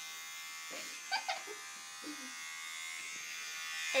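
Electric hair clippers running with a steady buzz during a haircut.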